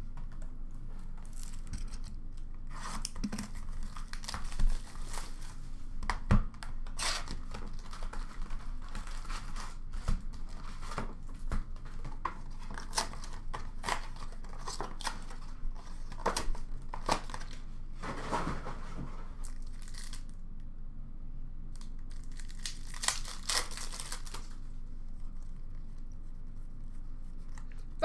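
Retail foil packs of hockey trading cards being torn open, their wrappers ripping and crinkling in a string of irregular crackles, with a short lull a little after two-thirds of the way in.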